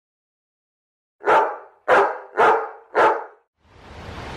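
A dog barking four times, about half a second apart, each bark fading off quickly.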